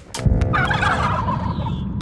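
Cartoon sound effects: a heavy low thud about a quarter second in, then a fast, jittery warbling noise that runs for about a second and a quarter and fades out.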